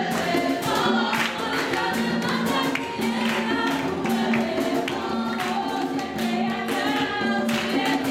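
A group of voices singing a gospel worship song together, with steady rhythmic hand clapping keeping the beat.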